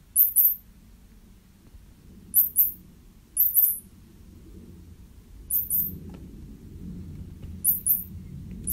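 Recorded mouse squeaks played from a tablet's speaker: short, very high-pitched chirps in quick pairs, five pairs spaced a second or two apart, over a faint low rumble.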